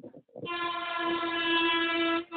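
A vehicle horn sounding one long, steady note that starts about half a second in, just after a brief knock.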